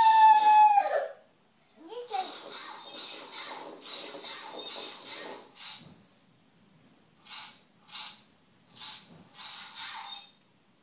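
A loud high-pitched squeal that falls in pitch over about a second. Then a small toy robot's motors whir, first for a few seconds and then in short bursts as it is driven by remote control.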